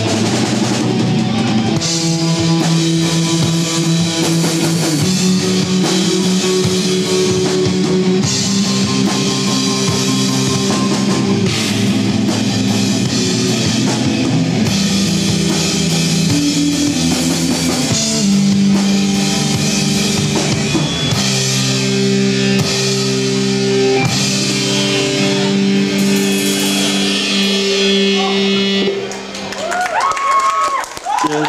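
Amateur rock band playing live, with electric guitars, bass guitar and drum kit, loud and steady. The playing drops away briefly just before the end.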